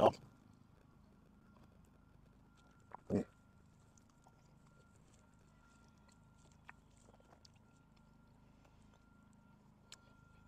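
A man chewing a mouthful of food gives one short, closed-mouth 'mm' of appreciation about three seconds in. Otherwise only faint background with a faint steady high tone.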